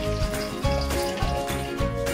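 Background music: held notes over a regular bass beat.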